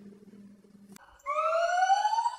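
A gibbon calling: one long whoop that starts a little over a second in and rises steadily in pitch.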